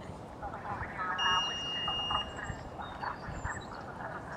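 Distant voices, with a single steady high-pitched tone lasting about a second, starting a little after one second in.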